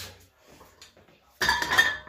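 Short metallic clatter and clink, like gym weights or a bar knocking together, starting about one and a half seconds in. Before it, a breathy groan fades out.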